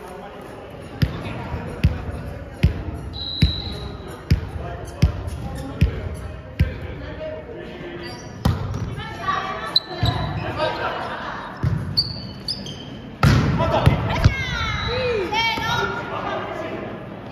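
A volleyball bounced repeatedly on a wooden gym floor, about one bounce a second and ringing in a large hall. Sharper hits on the ball follow in the second half, with players calling out and a burst of loud shouting near the end.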